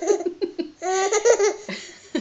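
Baby laughing in a run of short bursts, with one longer drawn-out laugh about a second in.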